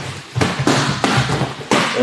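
A kickboxing combination on focus mitts: a quick run of gloved punches smacking the mitts, then a middle kick landing near the end.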